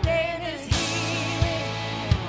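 Live worship band music: a sung melody over sustained chords, with a steady kick-drum beat.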